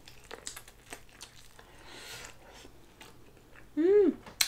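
Close-up mouth sounds of people biting and chewing boiled corn on the cob: soft wet clicks and smacks. Just before the end a short voice sound rises and falls in pitch, louder than the chewing.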